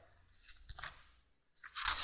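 Loose sheets of paper being leafed through and lifted on a desk: a few soft rustles and crinkles, louder near the end.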